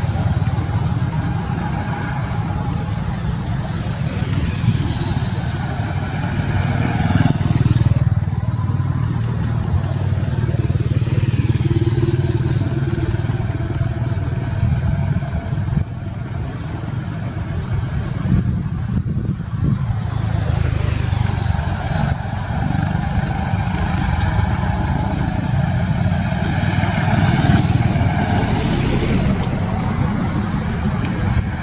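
Road traffic: engines of passing vehicles, a steady low rumble with no break.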